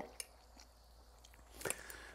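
A man quietly chewing a mouthful of cheese-topped bratwurst ragout. There is a soft mouth click just after the start and a few small wet clicks near the end.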